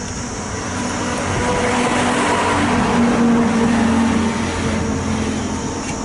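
A motor vehicle passing by: engine noise that builds, is loudest about three seconds in, then fades.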